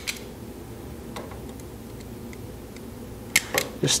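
Bostitch plier stapler snapping staples through leather seam allowance: one sharp click at the start, a few faint ticks, then two or three sharp clicks close together near the end.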